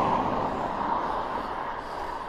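A car that has just overtaken goes on up the road, its tyre and engine noise fading as it draws away. Under it is a steady rush of noise that stays on.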